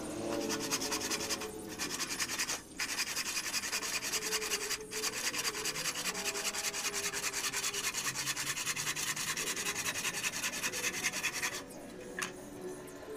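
Hand saw cutting through a wooden board with rapid back-and-forth strokes. The sawing breaks off briefly twice in the first five seconds and stops near the end.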